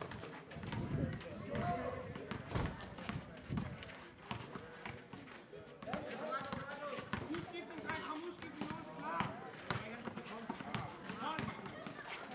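Players' voices calling out during a basketball game, with a basketball bouncing on a paved court and the scuffs and knocks of running footsteps.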